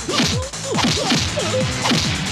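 Film fight sound effects: a rapid string of whooshing swishes and hits, about five a second, each swish dropping in pitch, with a faint steady background score beneath.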